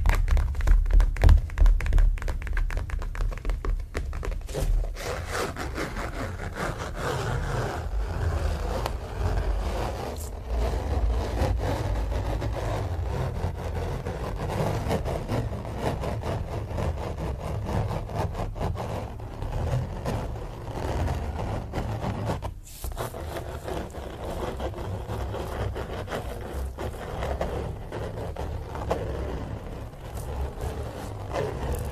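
Fingers scratching and rubbing across the surface of a stretched canvas print held close to a microphone, a steady scraping rustle with low handling bumps and a brief pause about two thirds of the way through.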